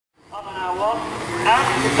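An event commentator's voice, starting after a brief silence at the very start.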